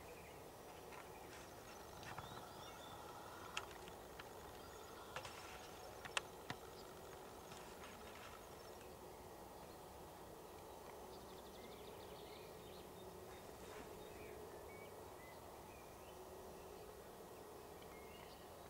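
Near silence: faint open-air ambience, with a few sharp short clicks between about three and seven seconds in.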